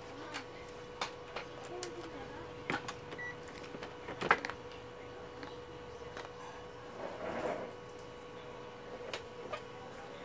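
Scattered clicks and knocks of a digital multimeter and its test leads being handled and set down on a TV power-supply circuit board, the loudest a sharp knock about four seconds in. A steady faint hum runs underneath.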